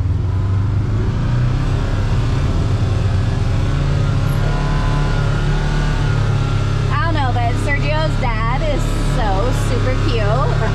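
Kawasaki KRX side-by-side's parallel-twin engine running steadily under way on a trail, its pitch stepping up slightly about a second and a half in and again around four seconds in. A voice is heard over it near the end.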